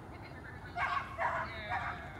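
A dog barking three times in quick succession, starting about a second in.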